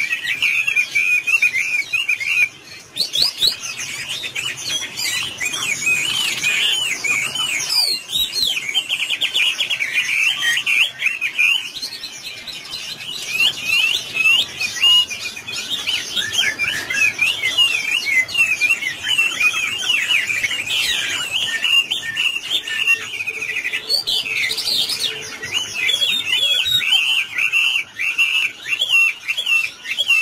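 Chinese hwamei (Garrulax canorus) singing a long, fast, varied song of whistled and sliding notes, with a brief pause about two and a half seconds in.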